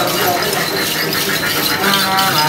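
Then ritual accompaniment: a đàn tính, the long-necked gourd lute, plucked while a cluster of small metal bells jingles steadily, between lines of chanting.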